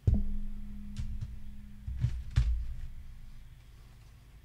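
Handling knocks from a plastic CD jewel case against the microphone and its boom arm: a sharp thump with a low hum ringing on for about three seconds, then several lighter knocks and clicks about one and two seconds in.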